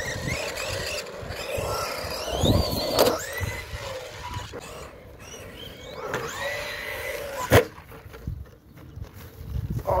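Arrma Big Rock RC monster truck's electric motor whining up in pitch as the truck accelerates, several times over, with two sharp knocks, one about three seconds in and one after about seven and a half seconds.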